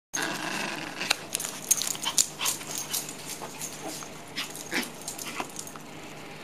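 Red poodle making sounds at play, mixed with many short, sharp clicks and scuffs.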